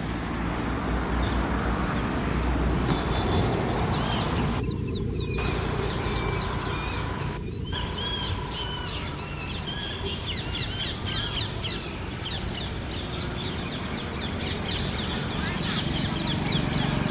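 Shrill bird alarm and distress calls, many short rising-and-falling notes in quick succession, starting about four seconds in and thickest around the middle, as a large-billed crow attacks an Asian koel; a steady low rumble underneath.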